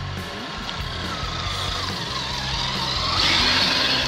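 Redcat Gen8 RC crawler's electric motor and gears whining as it drives through slush, the pitch wavering with the throttle and growing louder as it approaches, then cutting off abruptly at the end. Background music plays underneath.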